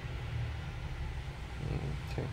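A steady low hum of background noise, with a faint soft rustle near the end.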